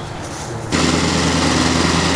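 A small engine running steadily, cutting in abruptly less than a second in, with a steady low hum and a noisy hiss over it.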